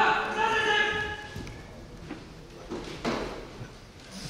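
Kendo kiai: a long, drawn-out shout that trails off about a second and a half in, a couple of light thuds on the wooden floor, then a shorter shout about three seconds in, echoing in a large hall.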